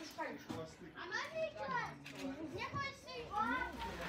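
Speech only: several people's voices, some high-pitched, talking in a group without clear words.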